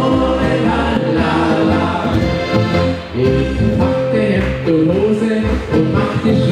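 A live folk-pop band playing a song: a Steirische Harmonika (diatonic button accordion) and upright double bass, with several voices singing, loud and continuous.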